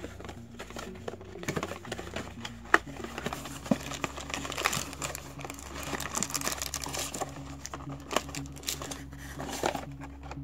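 Cardboard box and its packaging being handled and pulled apart, crinkling and rustling with scattered light clicks and one sharper click about three seconds in.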